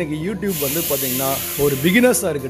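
A hissing noise that starts about half a second in and lasts about a second and a half, over a voice.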